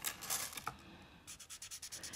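Paper tortillon (blending stump) rubbing graphite into a small paper drawing tile, smoothing the pencil shading: faint scratchy strokes in two short spells, with a light click or two.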